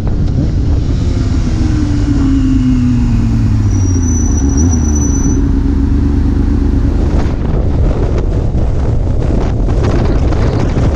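Yamaha sportbike engine heard from the bike with wind on the microphone, its pitch falling as the bike slows and then holding steady. After about seven seconds the sound becomes rougher and more wind-buffeted as the footage switches to another ride.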